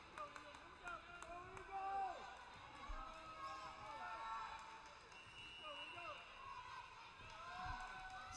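Faint background voices in a gymnasium, people talking and calling out between volleyball rallies, with a single dull thump about three seconds in.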